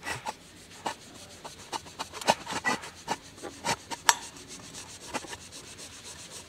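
Cotton wad rubbing liquid carnauba wax over a Yamaha XV250 Virago's chrome cylinder cover in short, irregular polishing strokes, with a sharper click about four seconds in.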